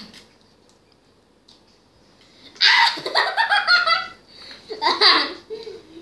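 A child laughing: quiet at first, then a burst of loud, rapid laughter about two and a half seconds in, and a shorter laugh about a second later.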